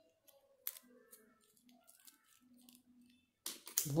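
Faint rustling and small clicks of stiff double-sided paper being handled in the fingers, with one sharper click a little under a second in.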